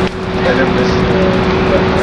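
A steady low hum, holding two constant pitches, over an even rushing background noise.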